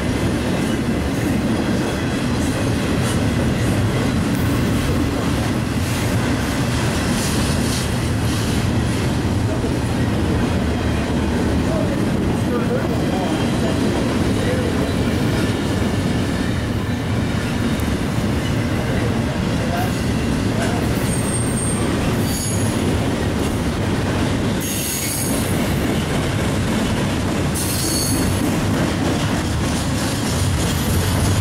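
A CSX double-stack intermodal freight train rolling past close by, a steady rumble and clatter of wheels on rail. Several short, high-pitched squeals break in during the last third.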